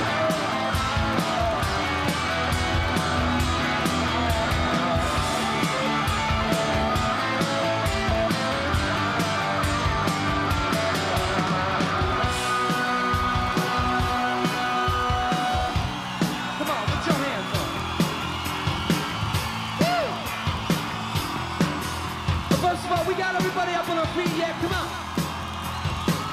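Live rock band playing loudly: electric guitar sustaining notes over drums and bass. About sixteen seconds in, the full sound drops away to scattered drum hits and yells.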